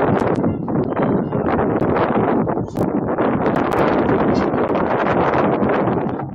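Wind buffeting the camera's microphone: a loud, steady rush with a brief lull about two and a half seconds in.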